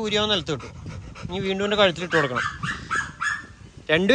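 A dog whining in a run of short high-pitched whines about two seconds in while it is petted through the cage bars, with a man talking to it.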